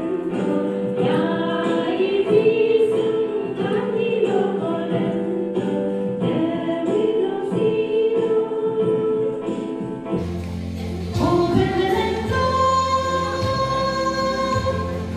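A group of women singing a gospel song together. About ten seconds in, it cuts abruptly to another song by a group of women singing into a microphone, with steady low backing notes.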